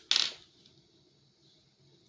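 A wooden colored pencil clattering down onto a hard countertop: one short, sharp clatter right at the start that dies away within half a second.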